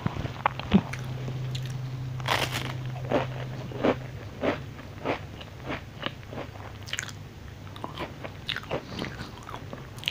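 Close-miked bites and crunches of a thin, crisp wafer cookie being eaten: short, sharp, crackly snaps at irregular intervals, roughly one or two a second, with chewing between.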